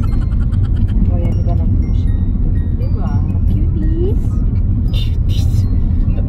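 Steady low rumble of a car's engine and tyres, heard from inside the moving cabin.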